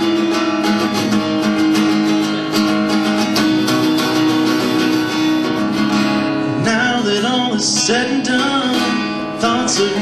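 Acoustic guitar playing an instrumental passage of a song, with a man's singing voice coming in about two-thirds of the way through.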